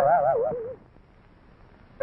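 Cartoon bird character's wavering vocal warble, sliding down in pitch and dying away within the first second, followed by a quiet stretch.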